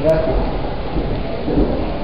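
A low rumble on the recording, with brief faint bits of a man's voice.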